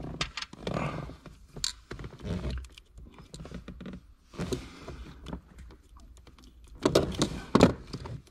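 Handling noise from plastic wiring-harness connectors and interior trim: scattered clicks, knocks and rustles, with the loudest cluster of knocks near the end.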